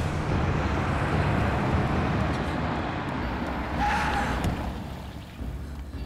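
A car driving up and slowing to a stop, with engine and tyre noise that fades as it slows and a brief high squeal about four seconds in.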